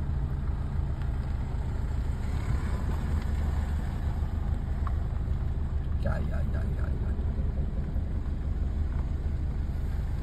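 Car engine idling with a steady low hum, heard inside the cabin as the car creeps slowly in reverse.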